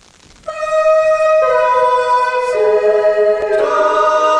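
Faint hiss, then about half a second in, layered voices begin singing long held notes, one part entering after another to build a sustained a cappella chord.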